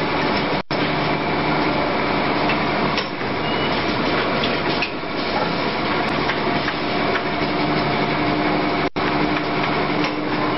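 Automatic blister packing machine running: a steady mechanical noise with a steady hum, cut by two brief gaps, one just after the start and one near the end.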